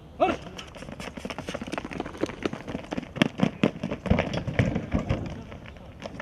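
Several athletes sprinting on a paved track: a quick, uneven patter of running footsteps, busiest around the middle, after one short shout of "Aha!" at the start.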